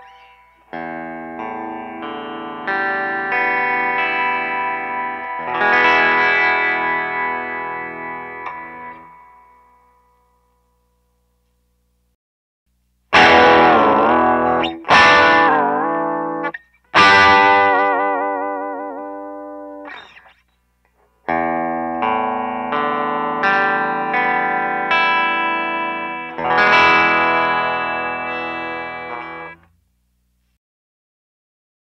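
Electric guitars played through an amp as a tuning-stability check: first a 2009 Suhr Carved Top Custom, then a 2022 Anderson Drop Top Custom. Ringing chords play for the first ten seconds, then after a pause of a few seconds come several loud, short notes that waver widely in pitch, and ringing chords follow again.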